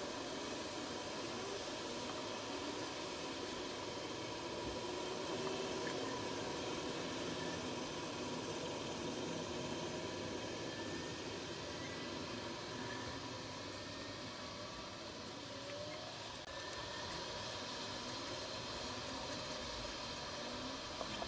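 Quiet, steady background noise with a faint hum, broken by two light clicks close together near the end.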